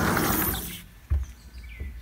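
A sliding glass door rolling open with a broad rush of noise, then a single thump about a second in. A faint bird chirp follows near the end.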